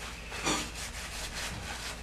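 A brief rubbing noise about half a second in, with a weaker one near the end, over a faint low hum.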